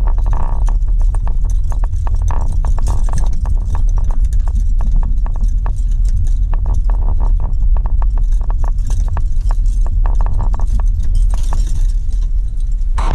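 Car cabin rumble as the car drives slowly over cracked, broken asphalt, with many irregular clicks and knocks from rattles and bumps as the wheels cross the rough surface.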